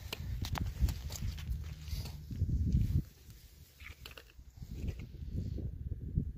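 Handling noise: gloved hands lifting a cut slice of ballistic gelatin off a wooden table, with rustling, low rumble and scattered soft knocks. The knocks are loudest a little past two seconds in.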